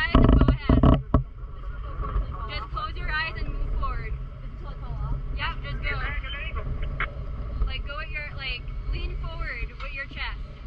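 Steady low wind rumble on an outdoor microphone, with loud buffeting bumps in the first second, under quiet, indistinct voices.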